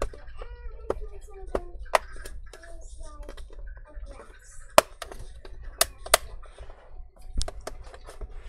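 Metal pry tool clicking and scraping along the seam of a plastic laptop bottom cover, with sharp irregular snaps and cracks as the cover's edge is forced, the loudest a little before the middle. The cover resists because a hidden screw still holds it.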